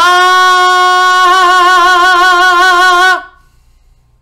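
A man singing one long, loud high note on an open vowel, held without cracking. He demonstrates the wide, baritone-like space he needs to sustain it. The note is steady for about a second, then a wavering vibrato sets in, and it cuts off about three seconds in.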